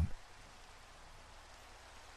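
Faint, steady rain ambience, an even soft hiss with no distinct drops.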